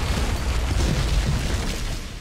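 Explosion sound effect: a long, deep rumbling blast with crashing debris, dying down at the end.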